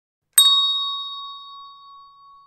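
A single bell-like ding sound effect, struck about a third of a second in and ringing out slowly with a clear tone.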